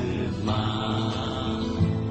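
A sung song with instrumental backing: the singer holds a long note on the last word of a lyric line over a steady accompaniment.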